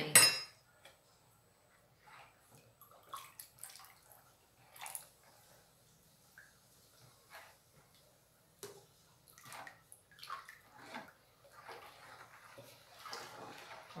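Plastic ladle stirring and sloshing a thick homemade caustic-soda soap mixture in a plastic bowl while a solution of baking soda is poured in, giving soft, irregular liquid and scraping sounds. There is a sharp knock at the very start. The mixture is beginning to thicken as it saponifies.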